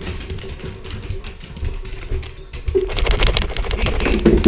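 A dog tearing around with a harness-mounted camera on its back, heard as rapid clattering and scrabbling from its claws and the jostled mount. The clatter turns loud and dense about three seconds in, over a steady low hum.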